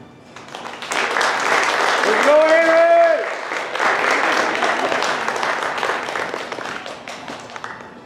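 Audience applauding, with one person letting out a single long cheer about two seconds in; the applause fades away near the end.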